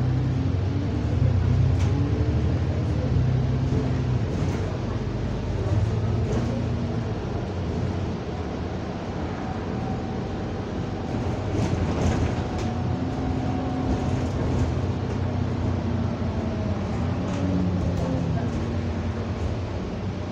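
Double-decker bus engine and drivetrain heard from the lower deck, its pitch climbing and then dropping several times as the bus accelerates and changes gear, with interior rattles around the middle.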